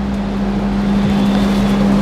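A steady low hum on one unchanging pitch, over a low rumble.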